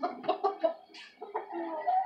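Chicken clucking: a string of short clucks in the first second, then a longer, slightly rising call near the end.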